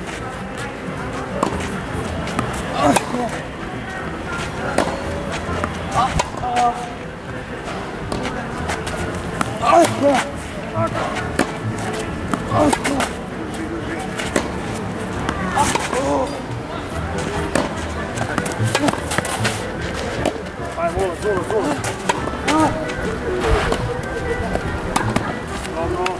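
Tennis ball being struck with a racket and bouncing on a clay court: sharp hits every few seconds, with voices and music in the background.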